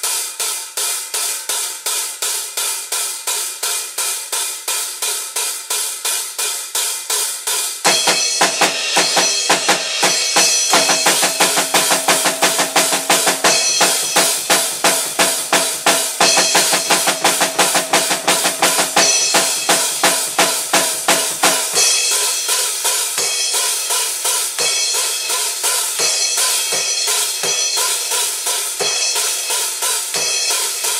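Acoustic drum kit played in a steady beat of cymbal and hi-hat strokes with snare and kick. About eight seconds in, the full kit comes in louder and busier, and it eases back to the lighter cymbal-led pattern a little past the two-thirds mark.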